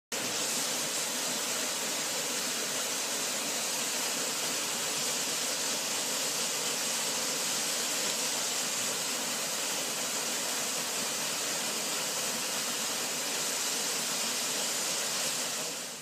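A waterfall rushing: a steady, even hiss of falling water that does not change, cutting off abruptly at the very end.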